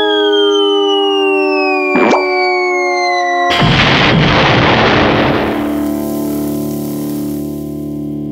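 Cartoon explosion sound effect: a sudden blast about three and a half seconds in that dies away over about two seconds. Before it, music with a long falling whistle and a short sharp sound about two seconds in; low sustained music tones follow the blast.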